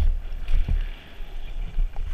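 Trek Remedy trail mountain bike descending a loose dirt and gravel trail, heard from a helmet camera: tyres on gravel and a low wind rumble on the microphone, with sharp knocks from the bike over bumps, one right at the start and another under a second in.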